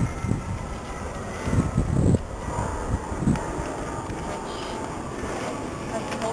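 Wind rumbling on the microphone, with a few low thumps as a large folded paper poster is handled and opened out, most of them between about one and a half and two seconds in.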